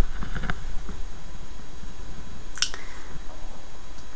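Steady low electrical hum from a homemade vacuum tube Tesla coil's mains power supply while it is powered up, with one sharp click a little past halfway.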